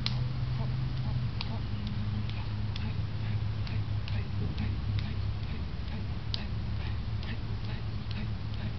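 Hands and forearms striking and blocking in a partner martial-arts drill, short sharp slaps at an even pace of about two a second. A steady low hum lies underneath.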